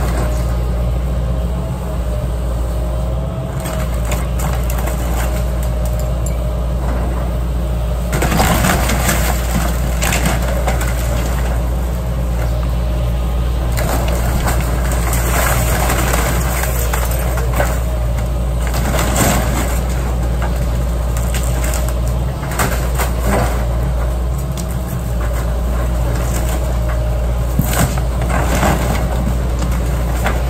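John Deere excavator's diesel engine running steadily while its arm tears into a wooden house. Timber and debris crunch and crack in bursts, the first heavy one about eight seconds in and several more through the rest.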